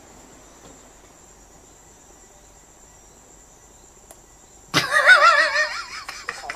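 Crickets trilling steadily and faintly. Near the end a loud voice comes in, holding a wavering, vibrato note.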